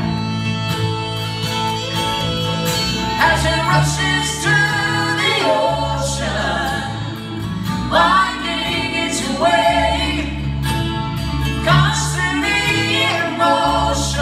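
Live acoustic string band (acoustic guitars, mandolin, fiddle and bass guitar) playing a song, with several voices singing together over it.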